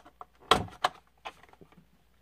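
A stainless steel finger ring being pressed into the slot of a packaging tin's insert: a few light clicks and taps of metal on the tin, with one sharper knock about half a second in.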